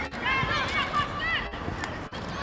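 Several short, high-pitched shouted calls from voices on a football pitch, with no clear words, over steady outdoor background noise.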